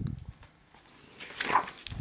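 A page of a hardcover picture book being turned by hand: a short paper rustle in the second half, ending in a sharp click.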